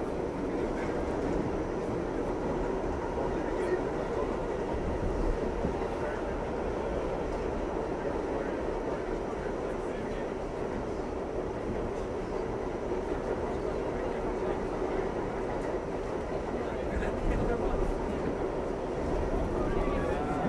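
Inside an R68A subway car running through a tunnel: the steady noise of the moving train, its wheels on the rails, with no breaks or distinct clicks.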